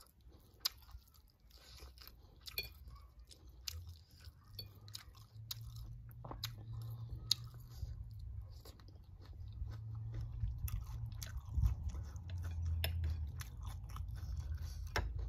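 Close chewing and crunching of raw green mango salad, with many sharp crunchy clicks. A low rumble runs underneath and grows louder in the second half.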